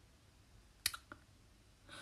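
Two short clicks, the first sharper and louder, about a quarter second apart, against faint room tone.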